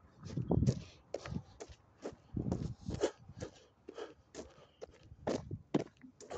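Footsteps of a person walking along a road, an irregular run of short scuffs and crunches, with louder low rumbling thumps of a hand-held phone being jostled at the microphone.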